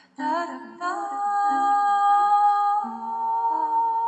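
Background music: a woman's voice singing wordless held notes, each sustained for a second or more, over a lower accompanying line. It starts after a brief gap at the very beginning.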